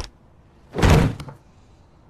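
A single heavy thud about a second in, dying away within half a second.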